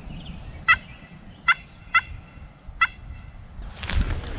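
Four short, sharp turkey calls, each less than a second apart, followed by a rustling noise near the end.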